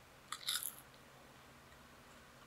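A bite of crisp home-fried french fries close to the microphone: a short burst of crunching about a third of a second in, lasting about half a second. A faint steady electric-fan hiss runs underneath.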